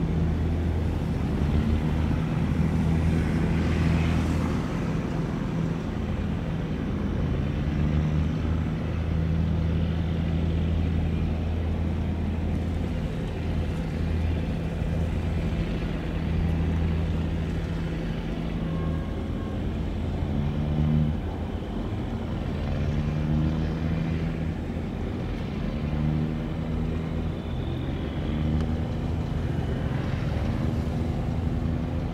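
Diesel engine of a heavily loaded river barge running, a steady low drone whose pitch wavers slightly up and down.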